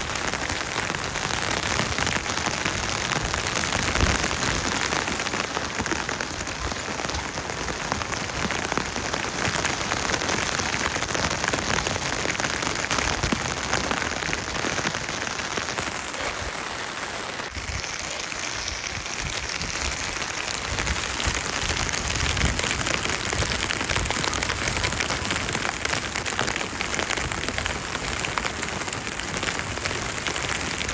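Steady rain falling, a dense, even hiss of drops throughout, its tone shifting slightly a little past halfway.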